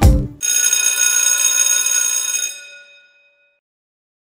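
Logo sound effect: a bright, bell-like metallic chime with a rapid shimmer, ringing for about two seconds and then fading away.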